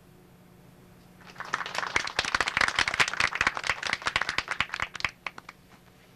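A group of people applauding: the clapping starts about a second in, builds quickly, then thins out and stops shortly before the end.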